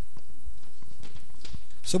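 Handheld microphone being picked up and handled: scattered faint clicks and knocks over a steady low hum. A man's voice begins near the end.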